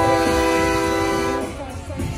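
A loud, steady horn blast of several tones at once that cuts off suddenly about one and a half seconds in.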